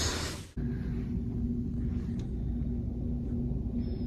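Steady low rumble of city background noise with a faint constant hum, heard from a high-rise hotel window; it starts suddenly about half a second in.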